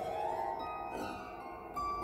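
Exposed strings on the cast-iron frame and soundboard of a stripped-down, roughly 100-year-old upright piano ringing like a harp after being sounded by hand. Several notes overlap and sustain, with new notes coming in at the start, about a second in and near the end.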